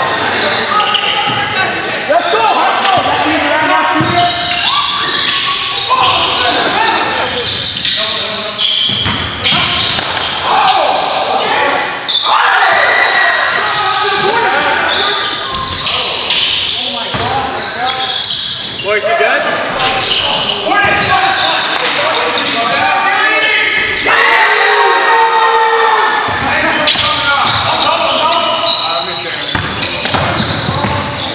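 Live sound of an indoor basketball game: the ball bouncing on the court and players' voices, echoing in a large gym.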